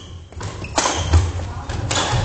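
Badminton rally on a wooden gym floor: sharp hits of rackets on the shuttlecock, about three-quarters of a second in and again near the end, with heavy thuds of players' feet landing on the floor, loudest just after the first second.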